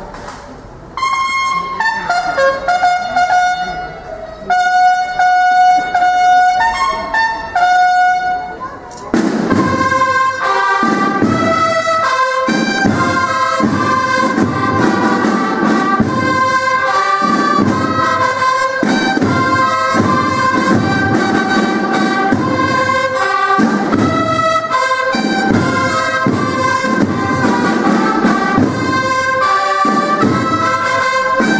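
A solo bugle call of separate held notes, followed about nine seconds in by a military bugle-and-drum band playing loudly together with a steady marching beat, for the lowering of the flag.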